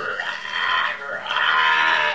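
A goat bleating: two long bleats, the second starting about a second in.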